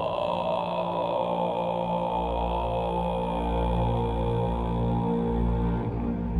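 Ambient soundtrack music: a sustained droning chord of held tones, with a deep bass swelling in about two seconds in.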